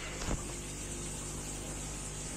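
A steady low mechanical hum with a light hiss, and a brief soft bump near the start.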